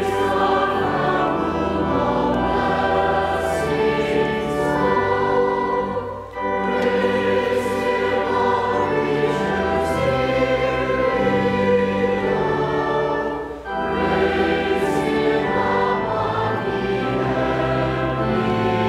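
Congregation singing a hymn or sung response with pipe or electronic organ accompaniment, in long sustained phrases with brief breaks about six and about thirteen and a half seconds in.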